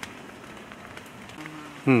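Steady hiss of light rain, with a person's short 'mm' right at the end.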